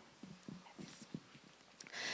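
Handheld microphone handling noise: faint, irregular low knocks and bumps as the microphone is passed from one hand to another and gripped, with a sharper click near the end.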